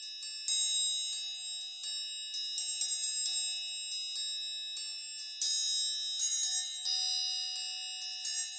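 Sampled triangle from the Kontakt Factory Library ('Triangle1') struck repeatedly at an uneven pace, about two hits a second, its high ringing tones piling up as each strike rings on. The muted hits do not cut off the triangles already ringing, so the strikes stack and the ring never stops between them; it has a crotales-like, gamelan sort of ringiness.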